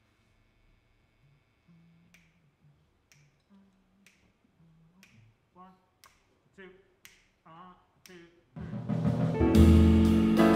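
A jazz quartet's count-off: sharp snaps about once a second over faint low notes and a soft voice. About a second and a half before the end, the full band of piano, electric guitar, upright bass and drums comes in loudly on the tune.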